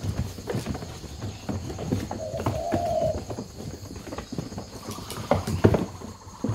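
Irregular knocks and scuffs from birds moving about inside closed styrofoam shipping boxes, with one steady pitched call of about a second, about two seconds in.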